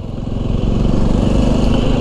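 Jawa 300's single-cylinder engine running while the motorcycle is ridden along a road, with wind and road noise, growing steadily louder over the two seconds.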